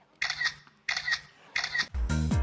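Three camera shutter clicks, evenly spaced about two-thirds of a second apart: photos being taken.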